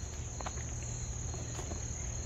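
Insects trilling steadily at a high pitch, with a faint low rumble and a few small clicks underneath.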